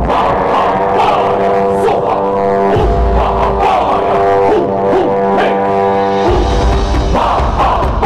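Buddhist mantra chanted by a group of voices over music, with long held notes and deep low tones that come and go.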